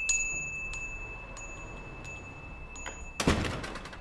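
A shop door's bell chime rings out and slowly fades, with a few light tinkles, as a customer leaves. About three seconds in, the door shuts with a short, loud rush of noise.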